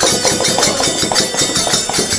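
Instrumental passage of a Hori folk song: a fast, dense run of jingling hand-percussion strokes with no singing.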